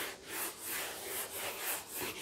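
Whiteboard eraser rubbing across a whiteboard in quick back-and-forth strokes, a repeated scrubbing swish as the writing is wiped off.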